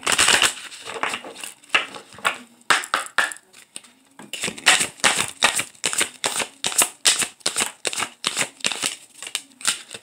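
A deck of oracle cards being shuffled by hand: a fast, irregular run of crisp card snaps and flicks, with a brief lull about four seconds in.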